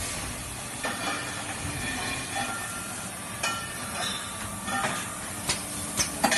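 Two-station circular welding machine running while it welds stainless steel flask bodies: a steady hiss with faint steady whine tones and a few sharp clicks.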